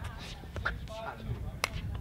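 Low wind rumble on the microphone with faint voices, and a hard plastic pickleball clicking once, sharply, about one and a half seconds in.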